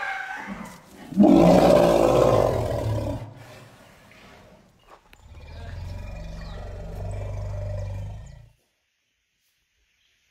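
Asian elephants calling in excited greeting, not aggression: a short call, then a loud trumpet about a second in lasting some two seconds, then after a pause a low, steady bellow for about three seconds that cuts off suddenly.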